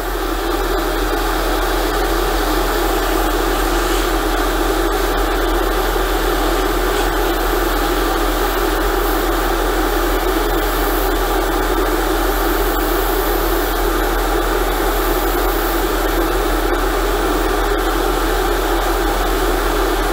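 Airbrush spraying paint in a steady, continuous hiss, with a low hum underneath.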